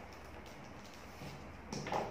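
Faint handling of a roll of masking tape, mostly quiet, with a short rasp near the end.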